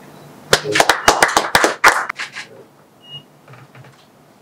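A small group of people clapping, a quick run of sharp hand claps lasting about two seconds that dies away.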